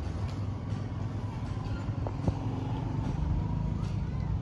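A steady low rumble of background noise, with a couple of faint clicks about two seconds in.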